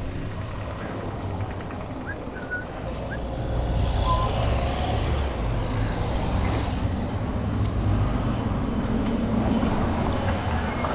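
Wind and road rumble from riding a bicycle, mixed with passing car traffic; the rumble grows louder about three and a half seconds in.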